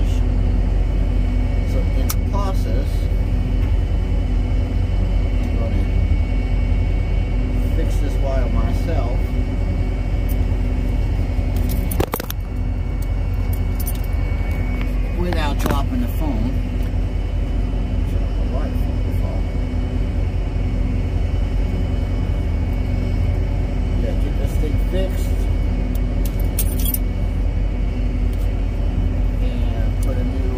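An engine idling steadily with a low hum throughout, overlaid with small clicks and jingling from wire strippers and a dangling key ring as a wire is worked on. There is a sharp click about twelve seconds in.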